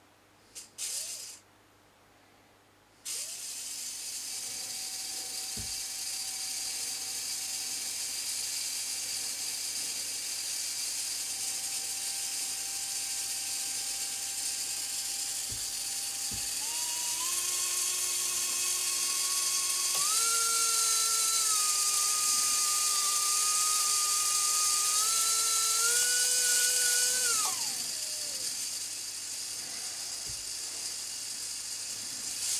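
Small electric motor of a model locomotive running on a bench power supply after a couple of brief clicks: a steady whirring whine that starts about three seconds in, climbs in pitch in steps as it speeds up, then winds down and stops near the end.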